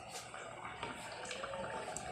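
Faint bubbling of food simmering in pots on a gas stove, with a few soft ticks.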